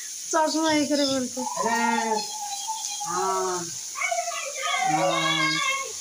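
A person's voice making several long, drawn-out wordless cries with wavering pitch, somewhat like howling.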